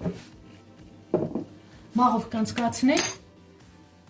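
A metal spoon clinking against a glass jar and a ceramic plate while a dry baking ingredient is spooned out: a few short clinks about a second in and a sharper one near the end.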